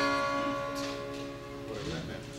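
A chord strummed once on an acoustic guitar, ringing out and slowly fading.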